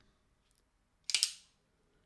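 Stan Wilson non-flipper flipper folding knife flicked open: a quick cluster of sharp metallic clicks about a second in as the blade swings out and locks, after a faint click just before.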